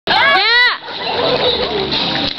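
A child's high-pitched yell, rising then falling in pitch and lasting under a second, followed by the rushing noise of pool water splashing.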